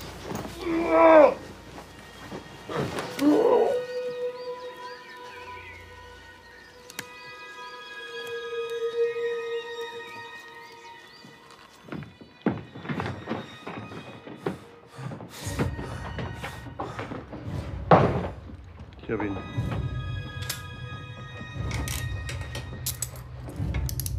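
A person's wordless cries and gasps during a struggle in the first few seconds, followed by a tense film score: a sustained drone with high wavering tones, a few sharp knocks around the middle, then a low rumbling score from about two-thirds of the way through, with a loud short hit near the end.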